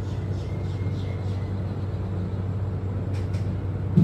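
Steady low hum of room noise, with faint laptop clicks from typing or the trackpad, two of them sharp and close together about three seconds in.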